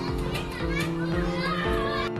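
Children's high voices calling out as they play, over background music with a steady low beat and held notes.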